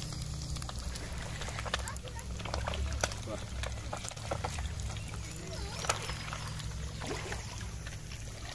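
Fish frying in oil in a pan over a wood fire: a steady sizzle broken by scattered small crackles and pops.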